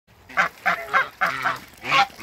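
Toulouse geese honking: a quick run of about six short, loud honks.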